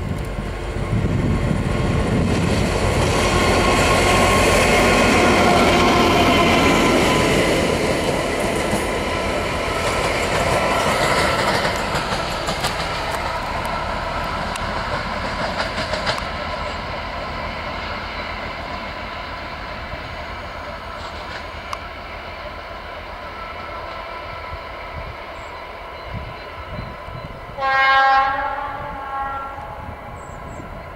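Diesel locomotives passing at close range: engines running and wheels rolling on the rails, loudest in the first third, then fading. Near the end a single short locomotive horn blast sounds, the Rp1 "attention" signal.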